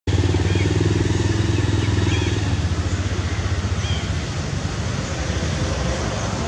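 A motor engine running with a low, steady hum, loud at first and fading after about two and a half seconds, as if passing by. A few faint, short, high chirps sound over it.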